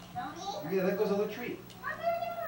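A voice making long, gliding, wordless sounds.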